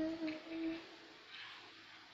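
A woman's voice humming one short, steady note for under a second, then faint room sound.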